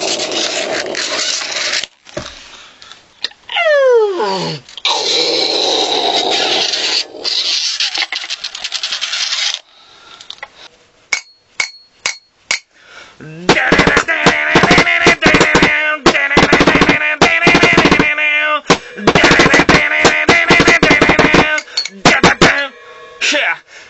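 Loud, heavy rap-metal playing on distorted electric guitar and drums. About four seconds in there is a downward pitch slide, near the middle a sparse stretch of separate hits, and then a fast, chopped rhythm through the second half.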